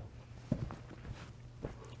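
Folded cloth being handled and stacked on a table: a few faint soft knocks, one about half a second in and another near the end, over a low steady hum.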